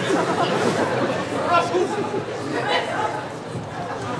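Audience chatter: many voices talking at once in a large hall, none of them clear.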